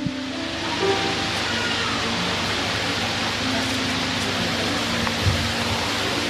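Soft background music of long held chords, sustained notes that change only slowly, under a steady hiss.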